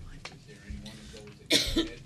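A person coughs once, a short loud burst near the end, over a low murmur in the meeting room.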